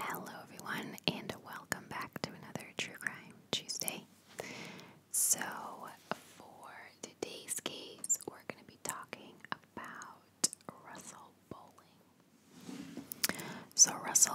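A woman whispering close into a microphone, with many small sharp clicks between the words.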